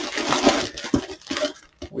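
Cardboard box and plastic food packaging rustling, crinkling and knocking as hands rummage inside the box, in irregular bursts that die down shortly before the end.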